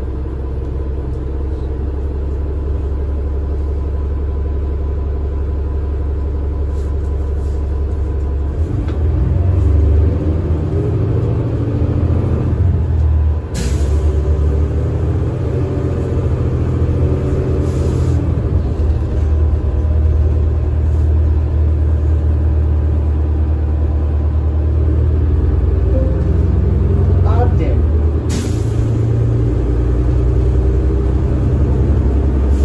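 Inside a diesel transit bus: the Cummins ISL9 engine's low drone, steady at first, then growing louder and rising in pitch from about a third of the way in as the bus accelerates, with a brief dip in the middle. Three brief sharp noises stand out, and a rising whine comes near the end.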